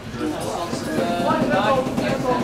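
People talking, with no clear words.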